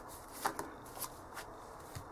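Tarot cards being slid and laid down one by one on a cloth-covered table: a few short soft taps, the loudest about half a second in.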